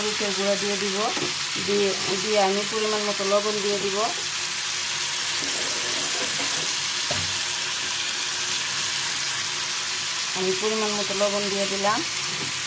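Sliced tomatoes and onions frying in oil in a pan, a steady sizzle. A voice-like pitched sound sits over it for the first four seconds and again near the end, and there is a light knock about seven seconds in.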